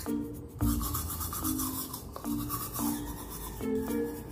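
Background music with a simple repeating melody, over a manual toothbrush scrubbing teeth coated in activated charcoal powder.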